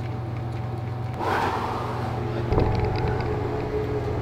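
Steady low electrical hum of the habitat's cooling unit and circulating fan running, with a short soft rustle about a second in.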